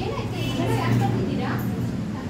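Children's voices talking, over a low steady hum.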